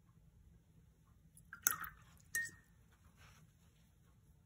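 Watercolour brush being rinsed in a water container: a little liquid sloshing and two sharp knocks of the brush against the container, the second ringing briefly like glass.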